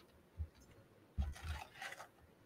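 Faint handling noises close to a microphone: a soft low bump about half a second in, then a heavier thump with some rubbing in the second half.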